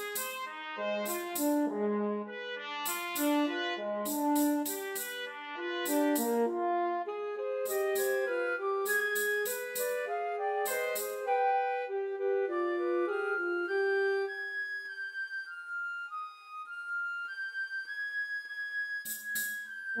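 Original orchestral film score: a melody of short pitched notes over a lower line, punctuated by sharp clicking strikes. About twelve seconds in the strikes stop and the music thins to a long held high note, and the strikes return just before the end.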